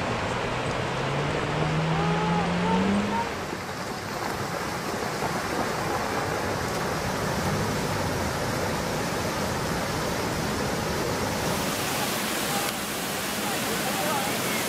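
Muddy floodwater rushing steadily down a wadi in a flash flood, a continuous noise of churning water. A voice calls out with a rising pitch in the first few seconds.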